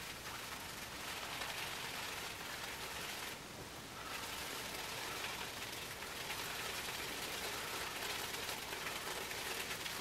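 Semogue 830 boar-bristle shaving brush swirled over a tin of Barrister and Mann Seville shaving soap, a steady faint hiss with a brief lull a little over three seconds in. The brush is being loaded with soap, ahead of face lathering.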